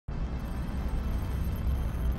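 A steady deep rumble with an even hiss over it, starting abruptly at the very beginning.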